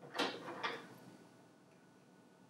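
Small plastic Plus Plus construction pieces clattering as they are handled and taken from a plastic bowl: two short clicks close together near the start.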